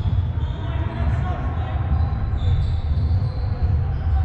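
Echoing indoor sports-hall ambience: distant players' voices and the thud of a ball over a steady low rumble.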